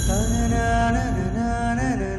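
Dramatic background music: a sustained drone with a slow melody over it that bends up and down in pitch.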